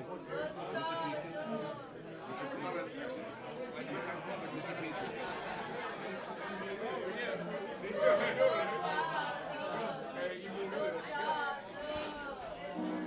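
Indistinct chatter of several people talking over one another in a club room, with no music playing.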